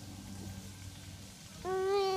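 A young child's voice making one short, held vocal sound at a steady pitch near the end, over a faint background.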